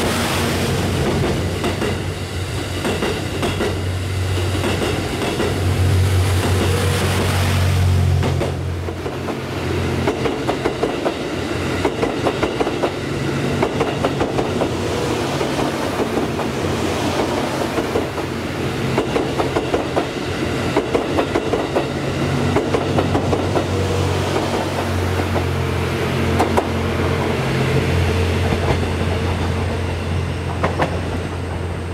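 Series 87 Twilight Express Mizukaze diesel-electric train running past: a steady low engine drone, with the wheels clicking over rail joints in quick repeating groups.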